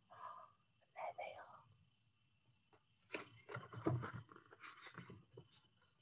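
Quiet pause filled with faint, scattered sounds: a soft murmur of voice early on, then the light rustle and handling of a picture book's paper pages being turned.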